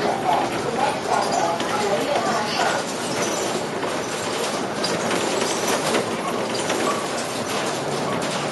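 Cabin noise of a King Long KLQ6116G city bus on the move: engine and road noise with a steady clatter of rattling fittings and panels.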